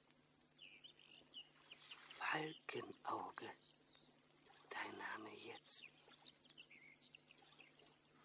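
A man's voice in three short, breathy bursts of halting, whispered sound, with faint bird chirps in the pauses between them.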